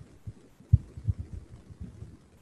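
Soft, irregular low knocks and bumps on a desk while a line is drawn, the loudest about three-quarters of a second in.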